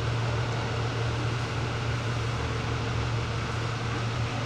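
Steady low machine hum, even and unbroken, with a faint higher steady tone over a background hiss.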